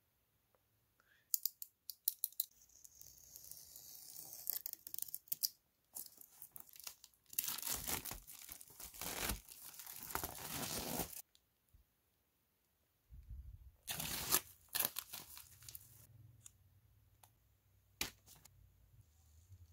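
Clear plastic wrapping being torn and crinkled off new canvas boards, in irregular noisy bursts. The loudest and longest stretch runs for about four seconds, from about seven seconds in.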